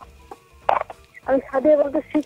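A faint, muffled voice with a few scattered clicks and a short hiss, much quieter than the studio speech around it.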